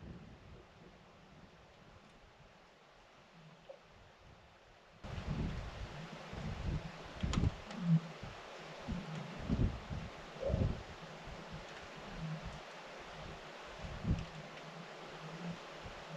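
Near silence for about five seconds, then the ice of a frozen high-altitude lake groaning: irregular low booms and groans, one rising in pitch about ten seconds in.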